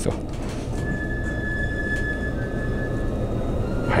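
Steady running noise of an electric limited express train heard from inside the cabin, with a thin steady whine from about a second in to about three seconds from the electric motor of a reclining seat moving back upright.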